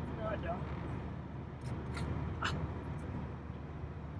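Steady low rumble of an idling engine, with two short light clicks about two seconds in, half a second apart, as the plastic cap is lifted off a truck's power steering reservoir.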